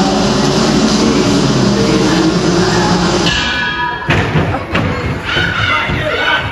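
Loud rumbling backing track played through a hall's sound system, cutting away about three seconds in. Two heavy thumps follow, about four and five seconds in, from performers on the wooden stage, and a voice starts near the end.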